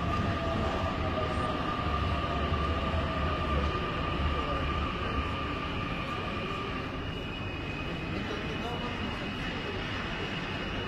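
Metro train at the platform, its electric equipment giving a steady whine and a slowly falling tone over a low rumble, with the chatter of a crowded platform. The rumble eases about six seconds in, and a higher whine comes in shortly after.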